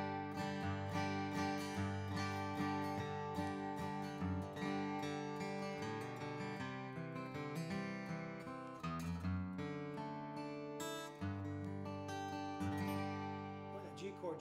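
Furch Green Series D-SR dreadnought acoustic guitar, Sitka spruce top and Indian rosewood back and sides, strummed and picked in full chords that ring out and sustain, the chords changing partway through.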